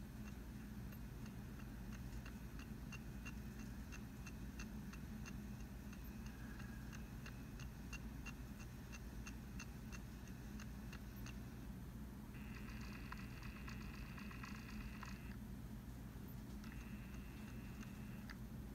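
Film sound effects of a spaceship's computer test equipment, played back from a TV: a steady run of soft electronic ticks, about three a second, over a low hum. About twelve seconds in the ticking gives way to a few seconds of rapid electronic chatter, and a shorter burst of it comes near the end.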